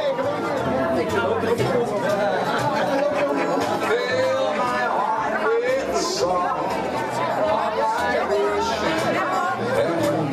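Crowd chatter: many people talking at once in a large room.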